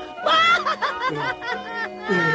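A cartoon rabbit's high-pitched laughter, a run of short bursts, over background film music.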